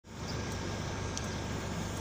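A car's engine and road noise as a steady low rumble, heard from inside the car.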